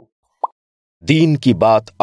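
A brief blip about half a second in, then a voice starts speaking about a second in.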